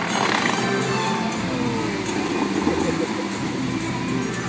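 An Arabic song played loud over the Dubai Fountain's outdoor sound system, heard live from the lakeside with a dense wash of open-air noise. A brief rush of noise comes right at the start.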